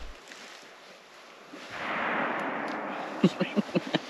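A distant muzzleloader shot about two seconds in, a dull report that rolls and fades through the hills for about a second. Near the end comes a burst of laughter.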